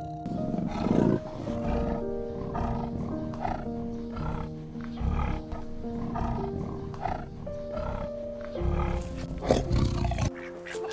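Leopard growling in short, repeated calls about once a second, over background music with long held notes.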